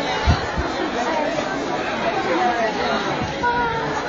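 Indistinct chatter of many people talking at once in a large room, with two short low knocks in the first second.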